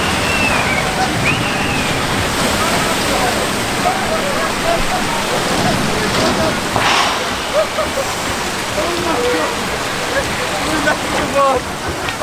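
Water of a log flume ride rushing and splashing in a steady wash, with a brief louder burst of spray about seven seconds in. Scattered voices sound faintly through it.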